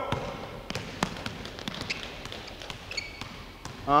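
A basketball being dribbled on a hardwood gym floor, sharp bounces at an uneven pace of about three a second.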